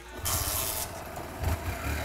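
Small motorcycle being started: a brief hiss in the first second, then the engine catches about one and a half seconds in and runs with a low, steady rumble.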